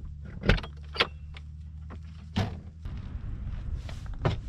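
Truck camper's rear entry door being unlatched and opened: a thump about half a second in, a sharp latch click at one second and another thump a little past two seconds, over a low steady rumble.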